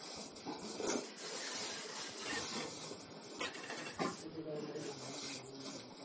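Wet cow-dung, soil and water plaster being smeared by hand over an earthen floor in sweeping strokes: a rough, continuous rubbing and scraping.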